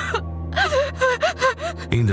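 A woman's muffled whimpering cries, about five short rising-and-falling sobs in quick succession, voiced by an actress as a bound captive struggling in terror. They sit over a low droning music bed.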